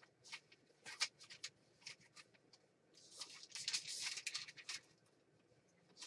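Faint rustling and light ticks of paper sheets being grabbed and handled, busiest for a stretch from about three to nearly five seconds in.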